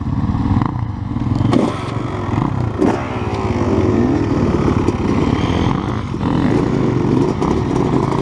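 GasGas enduro dirt bike engine revving up and down continuously as it is ridden over rough trail, with a few sharp knocks and clatter from the bumps.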